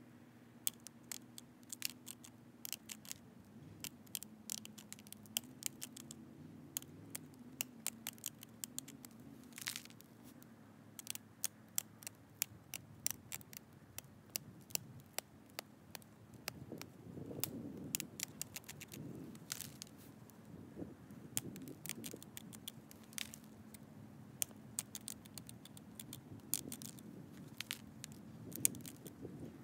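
Antler pressure flaker pushing small flakes off the edge of an agatized coral Clovis point held in a leather pad: a long series of sharp, irregular clicks as flakes pop off, with some softer scraping and rustling of the hands and pad in between.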